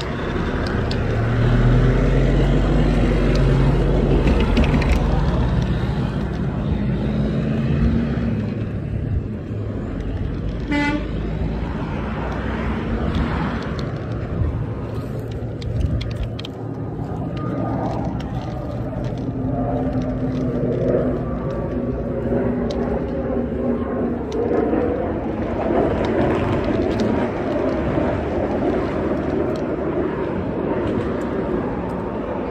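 Road traffic passing close by: a semi-truck's diesel engine goes past loudly in the first several seconds, then steady traffic noise continues from other vehicles. About a third of the way in comes one short horn toot.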